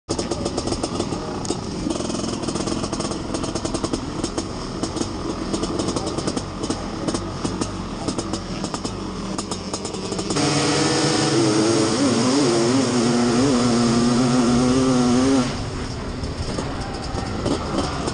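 Honda CR500 single-cylinder two-stroke motocross engine running unevenly at low revs for about ten seconds. It then jumps suddenly to a loud, high-revving note that wavers for about five seconds as the bike launches off the start, and drops back near the end.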